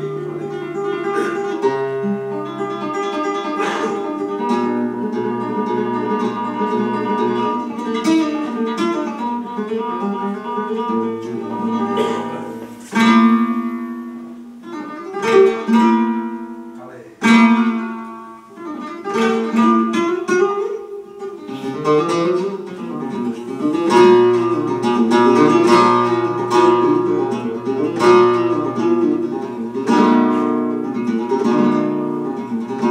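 Solo flamenco guitar playing the opening of a taranto. It starts with picked melodic runs; around the middle come several loud strummed chords that each ring out and fade, and then busy picking resumes.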